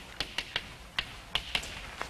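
Chalk writing on a blackboard: about seven short, sharp taps and clicks in an irregular run as the chalk strikes the board.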